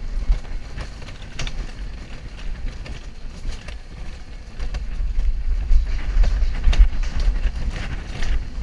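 Bobsled coaster car rumbling down its rail track, with scattered clicks and rattles. The rumble gets louder about halfway through.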